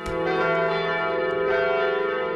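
Church bells ringing at a funeral, heard as a dense, steady chord of sustained tones.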